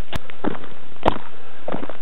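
Footsteps of a person walking on a packed-snow road: about four steps, roughly half a second apart, with a sharp click near the start.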